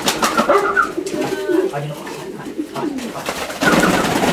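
Domestic fancy pigeons cooing in a small loft, with a burst of wing flapping near the end as a bird takes off.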